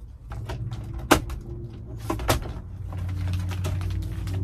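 Two sharp plastic knocks, about a second apart, as the Dometic Mini Heki skylight's plastic inner frame is handled and pushed up against the ceiling opening, over a low steady hum.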